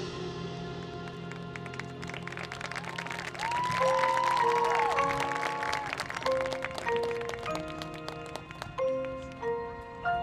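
Marching band field show music at a soft passage: sustained low chords under light audience applause, with a few high gliding tones in the middle. From about six seconds in, the front ensemble's mallet keyboards play single ringing notes, roughly one every half second.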